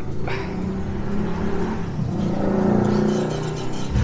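Yamaha VMAX 1700's V4 engine being started on the electric starter: a steady mechanical whirr with a slowly rising note, then the engine comes in much louder just before the end.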